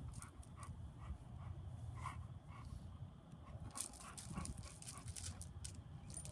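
A dog panting and whimpering in short repeated bursts, a couple to a few a second.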